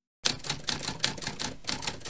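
Typewriter keys clacking in quick succession, about five or six strokes a second, starting a quarter second in.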